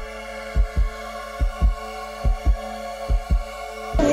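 Heartbeat sound effect, a double thump a little more than once a second, over a steady sustained synth chord: a suspense music cue.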